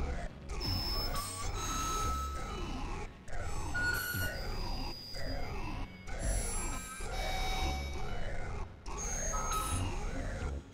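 Novation Supernova II synthesizer played live, making experimental electronic tones whose pitch sweeps up and down in repeated arcs. Low bass pulses sit underneath, with short held high tones now and then, and the sound breaks off briefly every second or two.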